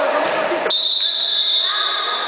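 Echoing sports-hall noise of an indoor children's football game, with voices and the ball. Less than a second in, a loud, steady high-pitched tone starts suddenly and holds, drowning out the hall noise.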